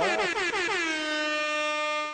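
Air horn sound effect played from a computer: one long blast, wavering in pitch at first, then holding a steady note until it cuts off abruptly.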